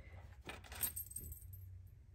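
Tarot cards being handled and squared in the hands: a few faint, light clicks and taps about half a second to a second in.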